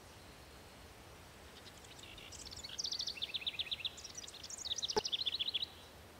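A songbird singing two quick trilled phrases of rapidly repeated high notes, each about a second long, over a faint steady outdoor hiss, with a brief click during the second phrase.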